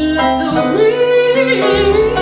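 A woman singing a slow ballad live into a microphone, her voice rising to a long held note with vibrato. Double bass notes sound underneath, dropping out partway and returning near the end.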